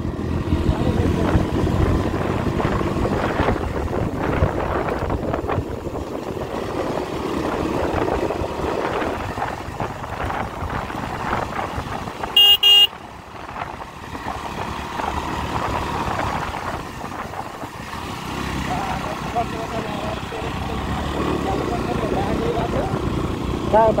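Steady rumble of a motorcycle ride on a paved road, engine and wind noise on the microphone. About halfway through, a vehicle horn gives two short beeps.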